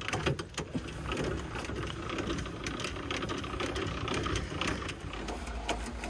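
Camper's tongue jack being worked to lower the coupler onto the hitch ball: a steady mechanical whir with many small clicks, rain falling throughout.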